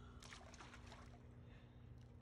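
Faint splashing of pool water as a toddler is let go and swims under the surface: a few short splashes in the first second, then quieter water movement over a steady low hum.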